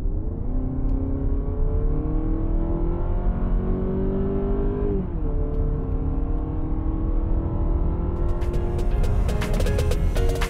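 Honda Accord e:HEV hybrid accelerating hard, heard from inside the cabin: the 2.0-litre four-cylinder's note climbs steadily, drops back suddenly about halfway as if shifting up a gear, then climbs again. Music comes in near the end.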